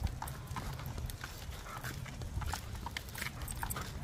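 Stroller wagon rolling on a cracked asphalt road: a low rumble from the wheels with irregular light clicks and taps.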